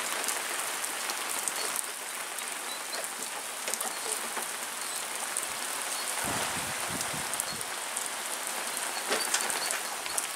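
Heavy rain falling on patio paving and a lawn: a steady hiss dotted with many small drop ticks. There is a brief low rumble about six seconds in.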